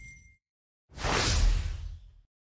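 A single whoosh transition sound effect with a deep low end, swelling in about a second in and fading away over about a second. Just before it, the tail of the intro music dies out.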